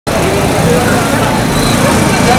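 Loud, steady outdoor street noise: a crowd's many voices mixed with road traffic.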